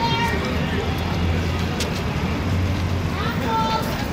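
Outdoor city street background: a low, steady vehicle rumble that swells in the middle, with people's voices in the background.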